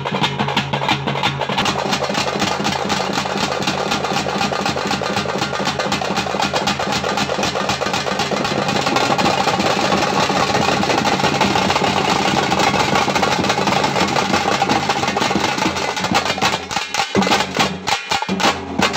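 A drum troupe beats shoulder-slung two-headed stick drums, a large bass drum and a metal-shelled drum together in a fast, dense rhythm. Near the end the drumming drops out for a moment, then comes back in.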